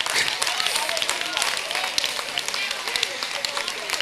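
Church congregation clapping, with scattered voices calling out in response.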